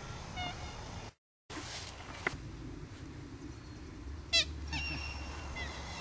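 Birds calling in quiet open-air background: a faint chirp half a second in, one short loud call about four and a half seconds in, then thin whistled notes. The sound cuts out completely for a moment about a second in.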